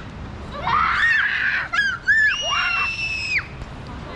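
Young children shrieking at play: a few short high squeals rising and falling, then one long held high scream lasting over a second.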